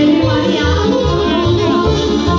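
Live Romanian folk dance music played through a PA: an accordion-led band over a steady bass beat, with a woman singing into a microphone.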